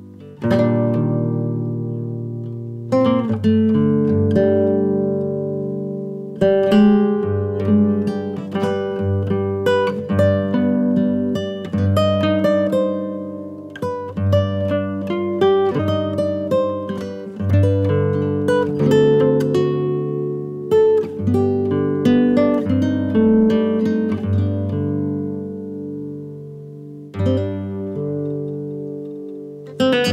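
Background music: a solo guitar playing slow plucked notes and chords, each left to ring out.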